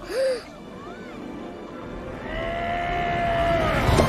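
Film score music swelling, with a long held high chord building steadily from about two seconds in. A brief sharp gasp comes at the very start.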